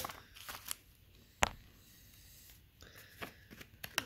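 Scissors snipping through the edge of a paper envelope, with a single sharp click about a second and a half in, then faint rustling of the envelope being handled near the end.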